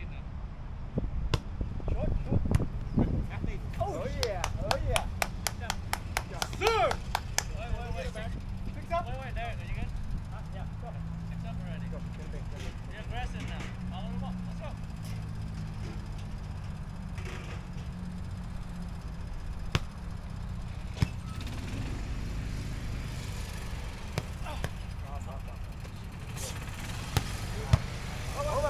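Outdoor ambience of a park volleyball game: steady low wind noise on the microphone with faint, distant voices of players, and a run of sharp taps in the first several seconds. Near the end there is a single sharp smack, a volleyball being hit to start the rally.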